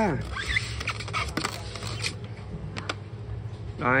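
A few short clicks and light scraping as the lid of a Mitsubishi induction-heating rice cooker is unlatched and swung open.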